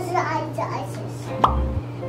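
A young child's brief voice, then about one and a half seconds in an edited-in sound effect: a quick rising pop with a short low thump, one of a repeating series laid over the video.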